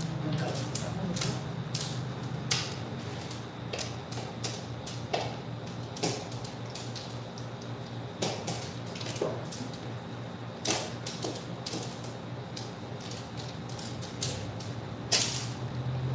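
Mahjong tiles clicking and clacking as players draw them from the wall and set or discard them on the table, irregular clicks with several louder clacks. A steady low hum runs underneath.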